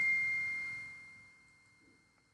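A single bell-like ding ringing out: one high, pure tone that fades away steadily and is gone by the end.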